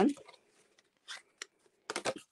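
Cardstock being picked up and handled on a work mat: a few short paper rustles and a light tap about a second in, and a louder paper sound near the end.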